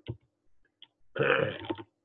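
A man coughs once, about a second in, with a faint click just before it.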